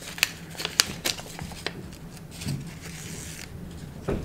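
Handling of a paper seed packet and plastic seed trays while seeds are sown: a few light clicks in the first second and a half, then a brief papery rustle a little after the halfway mark.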